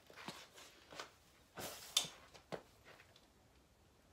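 A few faint, scattered clicks and knocks, with a brief scuffing noise just before the two-second mark.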